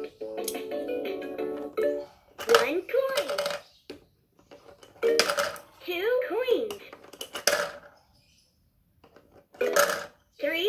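LeapFrog Count Along Register toy cash register playing a short electronic tune, then its recorded cartoon voice speaking a few short sing-song phrases. Sharp clicks or beeps come between them as the coins and the hand scanner are used, and it falls nearly quiet for a moment near the end.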